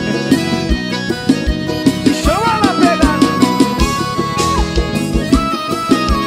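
Live forró band playing an instrumental passage: electric guitar, bass and congas over a steady low drum beat about twice a second, with a lead melody line that bends and then holds long notes.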